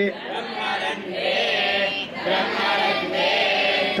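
A group of voices chanting a Sanskrit verse line in unison, repeating the line the teacher has just chanted, in call-and-response rote learning of Agamic chants.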